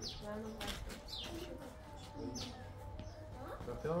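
Small birds chirping, short high notes that drop in pitch, about one a second, under quiet voices talking.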